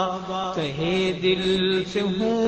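A man chanting an Urdu devotional tarana in praise of the Sahaba, in long held notes. The melody dips about half a second in and then holds steady.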